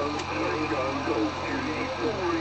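Several amateur radio stations calling at once through a transceiver's loudspeaker, their voices overlapping in a pile-up answering a QRZ call.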